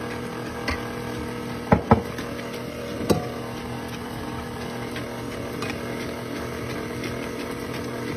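KitchenAid stand mixer running at low speed, its flat paddle beating cake batter in the stainless steel bowl with a steady motor hum. A few sharp clicks stand out about two and three seconds in.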